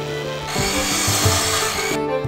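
Cordless drill boring into a length of timber: a harsh, noisy burst of wood being cut that starts about half a second in and cuts off suddenly.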